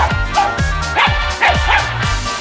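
A small dog giving five quick, high barks in play, over electronic dance music with a steady beat.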